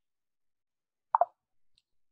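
One short plop about a second in, amid dead silence: the pop of a chat message arriving or being sent in a website chat widget.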